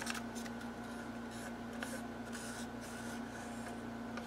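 Faint scraping and small clicks of a wooden popsicle stick working thick casting resin out of a small plastic cup, over a steady electrical hum.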